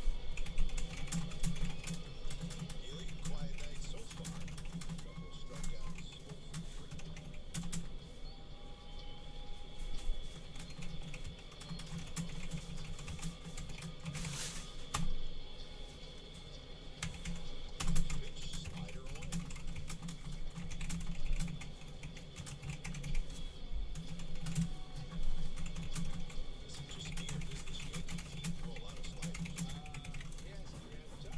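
Typing on a computer keyboard: irregular runs of key clicks with short pauses.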